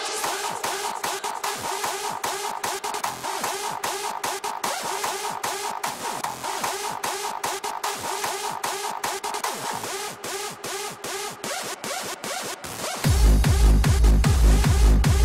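Electronic dance music in a breakdown: the bass and kick drum drop out, leaving a quick beat in the treble over a midrange synth line. About thirteen seconds in, the kick drum and bass come back in and the music gets louder.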